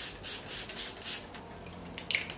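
Pump mist spray bottle of facial primer water being spritzed in a quick run of short hissing bursts, about four a second, stopping a little after a second in.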